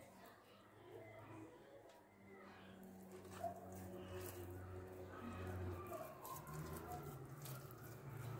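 Quiet handling of soft, oil-slicked yeast dough in a bowl: faint sticky squelches and soft taps as pieces are pulled and shaped, over a low steady hum.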